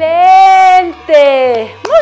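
A person's voice in long, high, drawn-out exclamations: one held for about a second, then a shorter one that falls in pitch.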